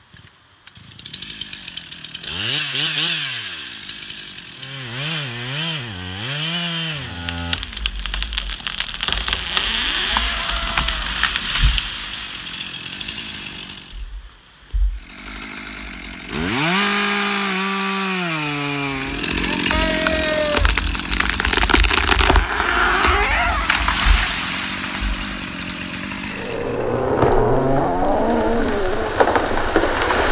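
Chainsaw engine revving up and down in repeated throttle blips, then running at steady high revs as it cuts into a standing tree. Near the end the saw's sound gives way to a dense rustling as bark and debris shower down from above.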